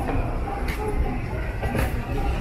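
Steady low rumble of a moving escalator, with two brief hisses, one in the first half and one near the end.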